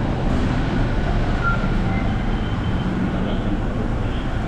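Steady car engine and road noise heard from inside the cabin as the car moves slowly.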